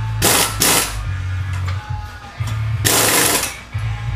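Pneumatic impact wrench on the front wheel hub during a CV axle install, run in two quick bursts near the start and a longer burst about three seconds in.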